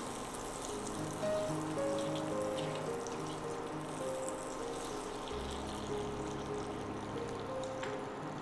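Soft background music, a slow melody of held notes, over a faint hiss of butter sizzling with a bay leaf in the pot.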